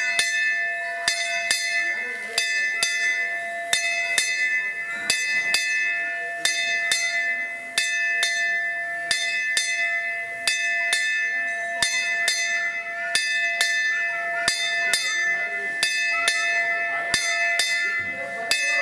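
Puja hand bell rung continuously, struck about twice a second at an uneven pace, its ring never dying away between strokes.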